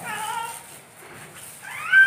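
A toddler's high-pitched squeals: a short cry at the start and a second, rising one near the end.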